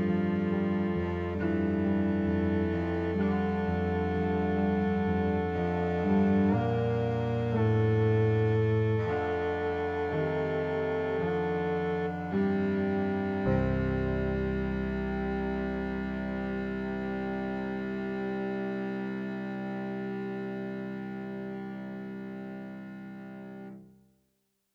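Closing bars of a piece for violin, viola, cello and piano: slowing phrases over a sustained low C, then a final held chord on C, entered about halfway through, that fades away over about ten seconds before cutting off.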